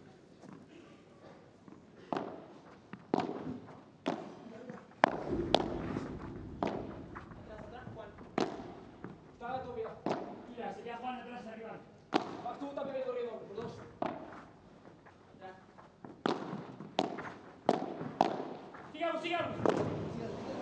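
Padel rally: a string of sharp pops as the ball is struck by rackets and bounces off the court and glass walls, about one a second, quickening into a fast exchange of volleys near the end. Crowd voices call out in the middle.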